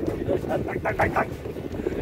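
Wind buffeting the microphone as a steady low rumble, with a quick run of short, indistinct voice sounds from about half a second to a second in.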